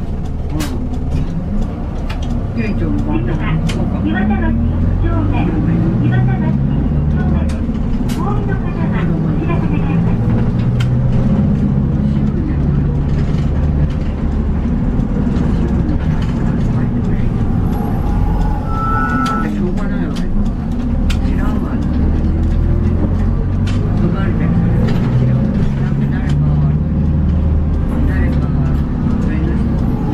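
Inside a moving city bus: the diesel engine's drone rises and falls in pitch as the bus speeds up and eases off, with frequent rattles and clicks from the cabin fittings.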